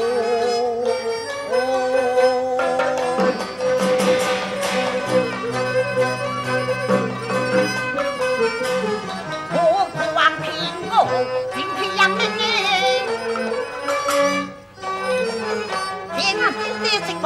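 Teochew opera accompaniment of traditional Chinese instruments playing a continuous melody of wavering, sustained notes, with occasional sharp percussion strokes.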